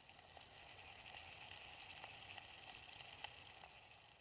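Two eggs and chopped meat frying in a small camping pot on a gas stove: a steady, faint sizzle with scattered small crackles.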